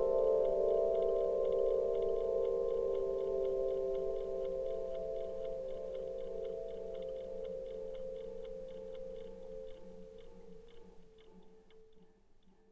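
The closing music's held keyboard chord slowly fades away, with a light, fast clock-like ticking running over it. The ticking stops near the end as the chord dies out.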